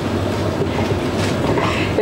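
Audience applauding: dense, steady clapping from a crowd.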